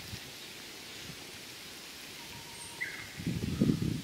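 Steady outdoor background hiss, with a brief high chirp a little before three seconds in and louder low sounds starting in the last second.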